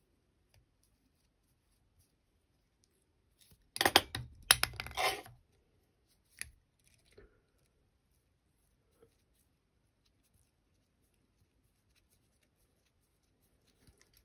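Handling noise at a fly-tying vise: a short burst of clicks and crackles about four seconds in, then a single fainter click, with near silence in between.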